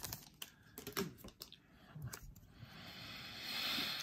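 Trading cards and a torn foil pack being handled: scattered light clicks and taps, then a soft rustle that grows louder over the last second or so as the cards are slid together into a stack.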